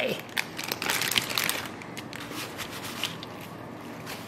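Crinkling and rustling of plastic wrap and paper towel as raw chicken drumsticks are handled and patted dry, busiest in the first second or two and then quieter.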